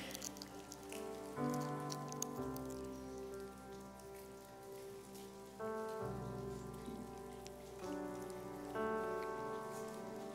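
Many small crackles of plastic as a congregation peels the sealed tops off prefilled communion cups, over soft sustained keyboard chords that change every second or two.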